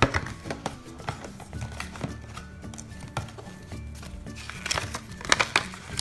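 Cardboard box flaps and a folded paper leaflet being handled: scattered rustles and taps, busiest near the end, over soft background music.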